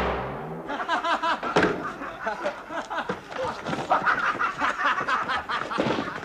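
A music sting ends on a final chord, then several people laugh, with a sharp knock about one and a half seconds in.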